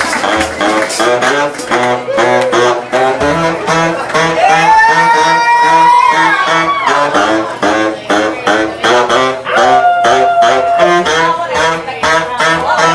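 Live funk brass band playing a driving groove: drum kit and a pulsing sousaphone and electric bass line underneath, with trombone, baritone saxophone and pocket trumpet. The horns hold two long notes, one in the middle and one near the end.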